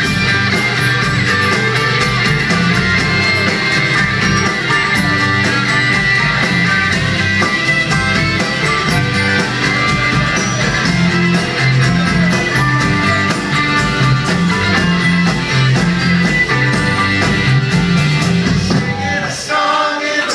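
A large live ensemble plays a rock song, with electric and acoustic guitars, piano and bass, and voices singing along. Near the end the instruments drop away, leaving mostly voices.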